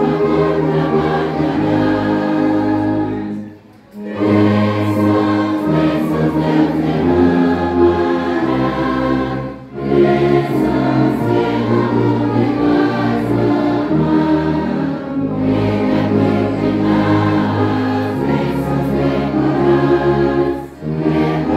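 Congregation singing a hymn together, accompanied by a church orchestra of saxophones and brass playing sustained chords. The music breaks off briefly between phrases about every six seconds.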